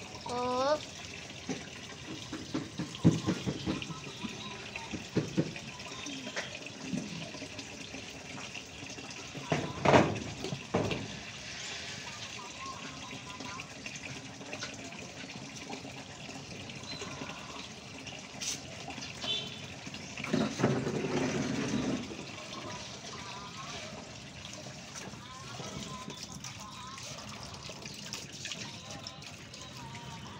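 Steady running water with voices in the background, a few short chirps, scattered knocks and a loud thump about ten seconds in.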